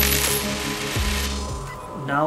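A coin dropped on a wooden floor, a short metallic rattle as it settles, over a music track with a deep kick drum about a second in; the music fades near the end.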